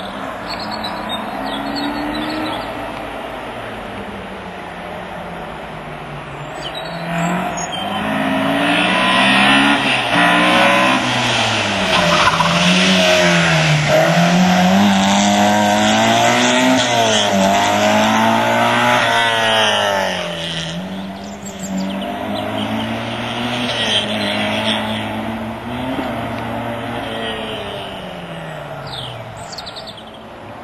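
A Group H modified saloon car's engine revving hard and dropping off again and again as it accelerates and brakes through the slalom gates. It is loudest for several seconds in the middle as the car passes close, then fades away.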